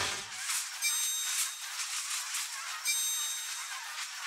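Logo sound effect on an end card: a brief low hit at the start, then a steady crackling, sparkling hiss with a few sharper pops.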